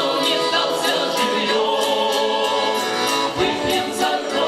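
A small folk vocal ensemble of men's and a woman's voices singing in harmony to accordion accompaniment, holding long notes.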